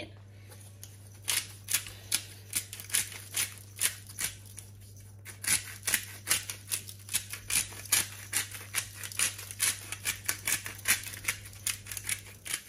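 Hand-twisted spice grinder being worked over a bowl, a fast run of dry clicks at about four a second. It starts about a second in and pauses briefly near the middle.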